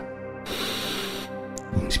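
Ambient new-age music pad holding steady tones, with a breathy hiss of a deep inhalation from about half a second in, lasting under a second.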